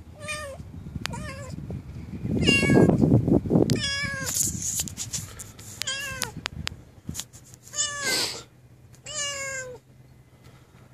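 Young black-and-white kitten meowing repeatedly, about seven separate high calls spread through the seconds. A low rumbling noise sits under the early calls.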